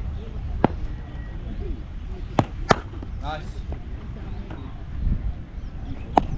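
Cricket ball knocking on bat and practice pitch during batting drills in the nets: a single sharp knock about half a second in, then two sharp knocks a third of a second apart about two and a half seconds in.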